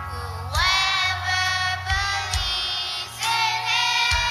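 Children's choir singing over instrumental accompaniment. A sung phrase swoops up into a held note about half a second in, and a second phrase enters a little after three seconds.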